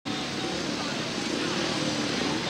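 Several 500cc single-cylinder speedway motorcycle engines running and revving at the starting gate, a steady blended engine noise.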